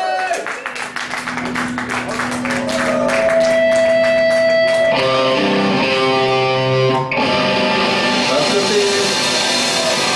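Live rock band playing electric guitars, bass and drums: quick drum and cymbal hits in the first few seconds, then held guitar notes and ringing chords.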